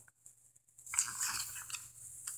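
A paper catalogue page being turned and handled: a brief rustle starting about a second in, after a near-silent moment.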